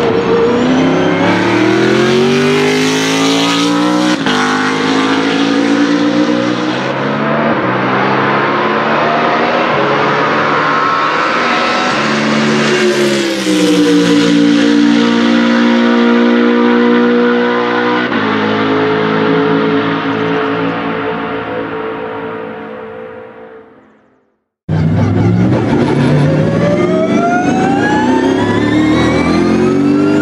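BMW Z4 GT3's V8 race engine running hard on track, its pitch stepping up and down with gear changes. A little past halfway it fades away to silence, then a new run starts with the engine note rising steadily through the revs.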